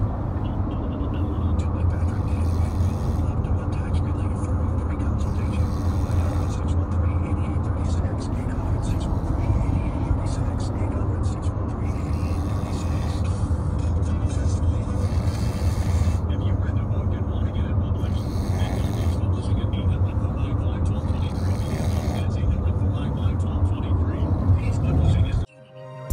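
Steady road and engine noise inside a moving car's cabin, a constant low rumble that holds without a break.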